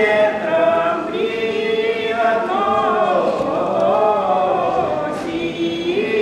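Unaccompanied traditional Russian folk singing by a woman and a man, in long held, bending notes.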